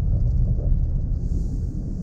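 Low, steady rumble of a car's engine and tyres heard from inside the cabin while it is being driven.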